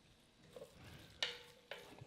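Wooden spatula stirring chopped onions, peppers, celery and garlic through a roux in an enameled cast-iron Dutch oven. The sound is faint, with scrapes against the pot about a second in and near the end.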